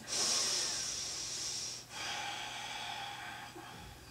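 A woman breathing audibly in a quiet room: one long breath of about two seconds, then a second, fainter breath.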